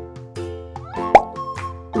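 Cheerful children's background music played on mallet percussion. About a second in there is a single loud plop that rises quickly in pitch.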